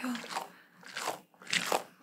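Squishy beaded stress ball squeezed and handled close to the microphone, giving a few short crunchy crackles.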